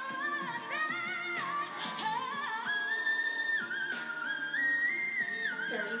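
A female singer's live vocal over backing music, holding long, high notes that step up and down in pitch.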